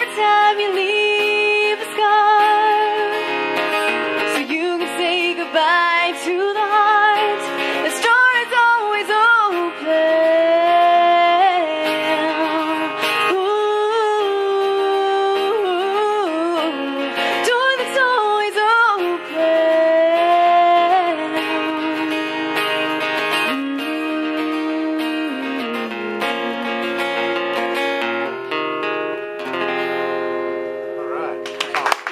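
A woman singing and playing an acoustic guitar live. The voice stops about four seconds before the end, and the guitar plays on alone.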